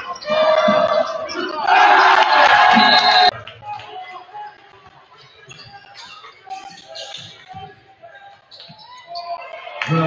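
Gym crowd shouting and cheering, loud for about three seconds, then cut off suddenly. Quieter sounds of play follow, with a basketball being dribbled and faint voices.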